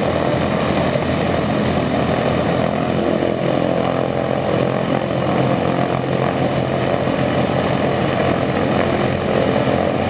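Boeing B-17G Flying Fortress's Wright R-1820 Cyclone nine-cylinder radial engines running steadily with the bomber on the ramp.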